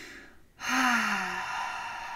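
A woman's long audible sigh: a faint breath in, then from about half a second in a breathy out-breath with a little voice in it that slides slowly down in pitch.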